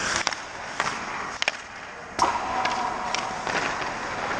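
Ice-hockey skates scraping on the ice, with sharp clacks of stick and puck. A loud crack comes about two seconds in, followed by a brief ringing tone.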